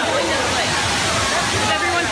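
Steady rush of running water, with voices of people calling faintly over it.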